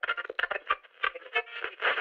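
Muffled, thin-sounding music in choppy, uneven bursts.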